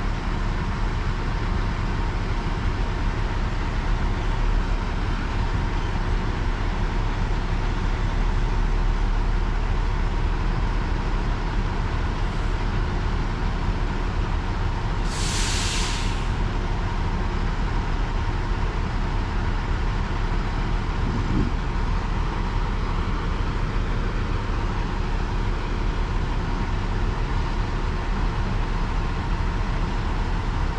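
Grove mobile crane's diesel engine running steadily under a lift. About halfway through comes a short hiss of released air, like an air brake.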